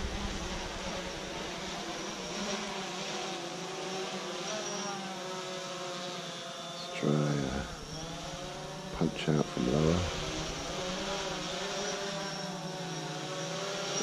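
DJI Phantom 4 quadcopter's propellers buzzing overhead, a cluster of steady tones that drift up and down in pitch as the four motors change speed.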